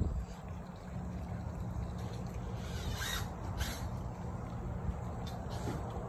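Outdoor ambience: a steady low rumble on the microphone, with two brief rustles about three seconds in.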